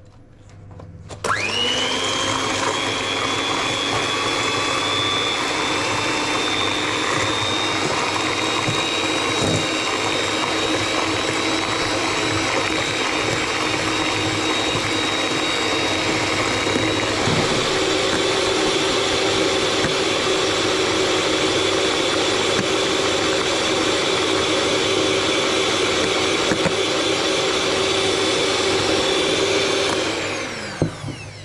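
Electric hand mixer starting about a second in and running steadily, its beaters whisking eggs and sugar in a stainless steel bowl. Its steady whine shifts slightly in pitch just past halfway.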